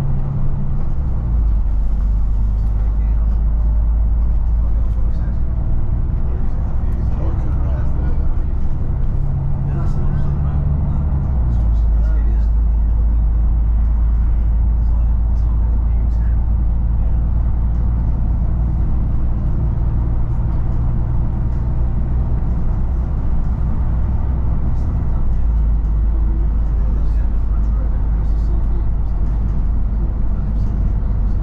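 Volvo B9TL double-decker bus's diesel engine pulling away and building speed, heard from inside the bus as a steady low drone. Its note shifts about a second in, about eleven seconds in and about twenty-five seconds in, as the ZF Ecolife automatic gearbox changes up.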